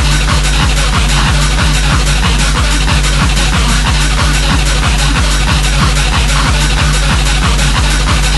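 Old-school gabber hardcore track playing: a fast, steady, heavily distorted kick drum pounding under a dense wall of synth noise, with no vocals.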